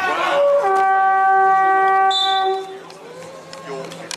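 Basketball scoreboard horn sounding one steady blast of about two seconds, starting just after the opening and cutting off.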